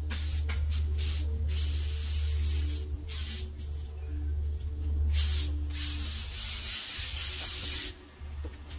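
Rake tines scraping over a concrete path and grass clippings in irregular strokes, over a steady low rumble.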